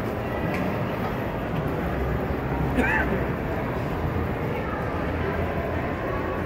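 Crowd murmur and chatter in a large, busy hall, with one short raised voice about three seconds in.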